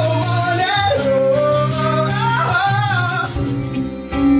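A male singer performing live to his own acoustic guitar, the voice sliding up and down in a high, ornamented line. The voice drops out about three seconds in while the guitar carries on.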